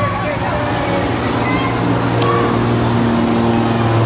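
A steady low hum with overtones, slowly growing louder, under the voices of people moving about.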